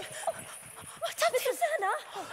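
Actors' voices on stage: short, emotional utterances whose pitch slides up and down, with several quick syllables about a second in.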